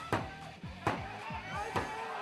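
Background music with a fast, steady beat, punctuated by three heavy accented hits a little under a second apart.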